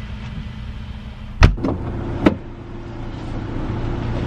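A car's boot lid slammed shut, heard from inside the boot: one loud thump about one and a half seconds in, then a second, sharper knock under a second later, over a steady low hum.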